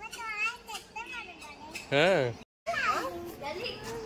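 Young children's high-pitched voices babbling and calling out, with one loud call about two seconds in. A split-second dropout to total silence follows it.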